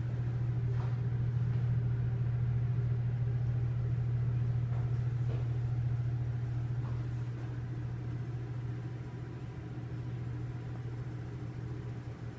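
Elevator car travelling, heard inside the cab as a steady low hum that eases a little in the second half.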